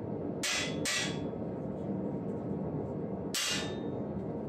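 Three short metal-on-metal tool strokes on a steel breastplate rib as its roping is worked in: two close together about half a second and a second in, and one about three seconds in, with a faint ring after the last. A steady low rumble runs underneath.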